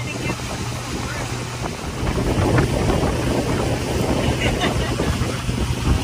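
Pontoon boat's motor running steadily underway, with wind buffeting the microphone and water rushing past, the wind and water growing louder about two seconds in.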